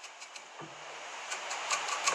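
Faint, scattered light ticks and scratching of a felt-tip permanent marker being drawn over a fly's fibres held in a vise, with a faint low hum coming in about half a second in.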